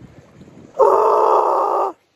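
A man's loud, breathy exhale, a sigh without clear pitch lasting about a second, starting a little before halfway and cutting off abruptly.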